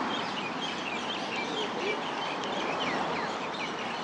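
Birds chirping and calling, a dense run of short chirps with a few quick falling whistles, over a steady background hum of city noise.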